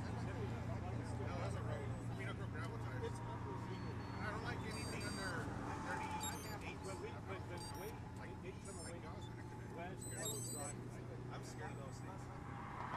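Overlapping, indistinct chatter from a group of cyclists standing together, over a steady hum of road traffic. Short high-pitched electronic-sounding chirps come through a few times.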